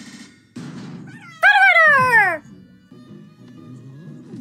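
Soundtrack of a YouTube Poop edit playing: a short buzzing noise, then a loud cry that falls in pitch for about a second, with music under it.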